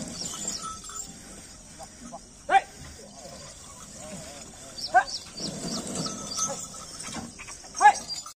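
Outdoor farmyard ambience: three short, sharp rising calls, about two and a half seconds apart, over small high bird chirps and faint voices.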